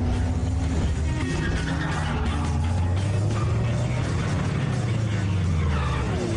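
Film soundtrack of music mixed with a car's engine running low and steady. Near the end a tone glides steeply downward in pitch.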